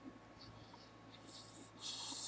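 Near-quiet room tone on a microphone with a steady faint hum, and two short soft hissing rustles near the end.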